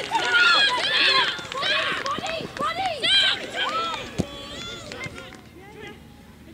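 Several women's voices shouting and calling out on a soccer pitch, overlapping and dying down over the last two seconds. There is a single sharp knock about four seconds in.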